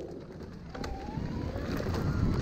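Electric mid-drive motor of a Luna X2 e-mountain bike whining, rising steadily in pitch as the bike accelerates under power. Under it is the building rumble of knobby tyres rolling on a dirt trail.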